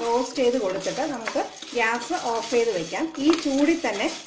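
Dry split lentils being stirred and scraped around a pan with a spatula while they dry-roast on a low flame, a rattling, scraping sound under a woman talking through much of it.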